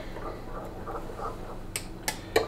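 Metal spoon stirring liquid soft plastic in a glass measuring cup, with faint scrapes and light taps, and one sharp tick near the end, over a low steady hum.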